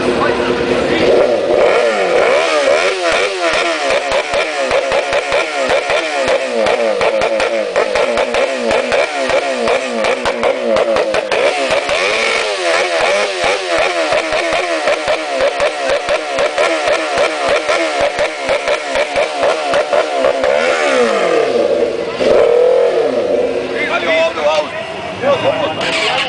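A sport motorcycle with its fairings stripped off, revved hard while standing still: the throttle is blipped over and over, so the engine note swings rapidly up and down. Near the end the revs fall away, then rise again.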